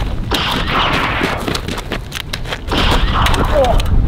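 Duel gunfire: a rapid string of sharp gunshot cracks in two noisy bursts, the first about half a second in and the second near three seconds. A short vocal cry follows near the end.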